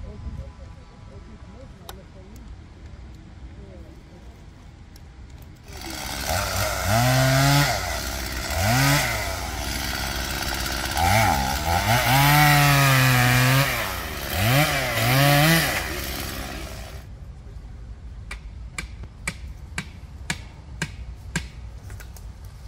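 Chainsaw revving up and down repeatedly as it cuts through a felled tree, starting about six seconds in and stopping suddenly some eleven seconds later. A run of sharp clicks follows.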